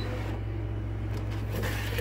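Brother ScanNCut cutting machine running with a steady low hum. Near the end comes a short rustling scrape as the cutting mat is handled.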